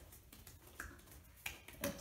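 Faint, scattered soft taps of small children's fists drumming on their own feet and legs.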